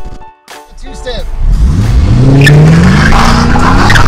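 A car engine accelerating, its note rising steadily for about two seconds and then holding, after a brief drop-out near the start.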